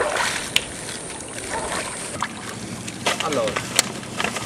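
Feet splashing through shallow seawater as someone wades out onto rocks, loudest at the start, with a few small knocks. A short voice sound comes near the end.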